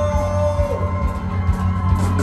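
Live band playing through a club PA, with a heavy bass line under keyboard and guitar. A long held note trails off about two thirds of a second in.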